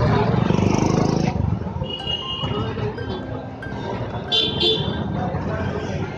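Busy street traffic: a vehicle engine runs loudly close by for about the first second and a half, then fades. Short horn toots follow over general street noise.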